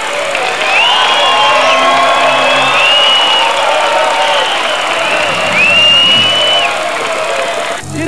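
A large crowd cheering, with shrill whistles rising above it, over music playing underneath. The crowd noise cuts off abruptly just before the end.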